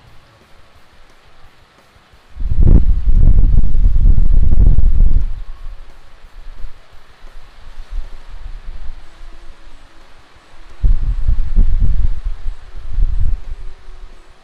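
Background music under two loud bursts of low rumbling noise. Each burst lasts about three seconds; the first starts about two seconds in and the second near the end.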